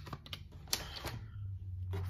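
A few sharp clicks and taps of makeup packaging being handled and set down, over a low steady hum.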